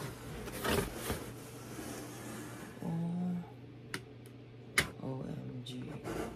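A large corrugated cardboard shipping box being handled and tipped open, with its flaps rustling and scraping and a few sharp taps and knocks on the cardboard. A short hummed voice sound comes about halfway through.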